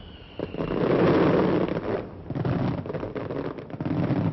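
Fireworks going off: a falling whistle at the start, then a dense run of crackling bangs, loudest about a second in.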